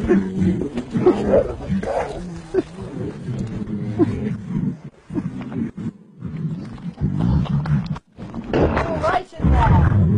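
Lions growling as they play-wrestle with a man, who laughs about a second and a half in; the sound comes in loud, uneven bursts with brief breaks.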